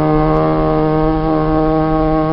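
Chanting voices holding one steady, unbroken droning note between verse lines of a sung khassida, with no words.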